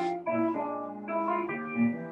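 Jazz piano trio playing: grand piano chords with bass, a new chord struck every half second or so.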